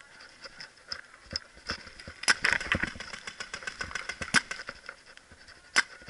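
Paintball markers firing: scattered single shots, then a rapid string of shots for about two seconds in the middle, and one loud single shot near the end.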